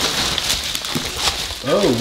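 Scuffling and rustling with scattered short clicks as a small long-haired dog jumps up and scrabbles at a person on a tile floor.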